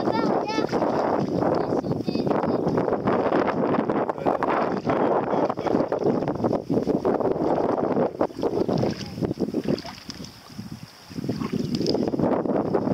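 Wind buffeting the camera microphone: a loud, steady rushing noise with quick flutters, easing off briefly about ten seconds in.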